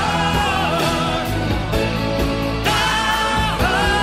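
Rock power-ballad music: a full band with regular drum and cymbal strikes under long, wordless held vocal notes with vibrato, sung in choir-like backing harmony. A second held phrase begins about two-thirds of the way in.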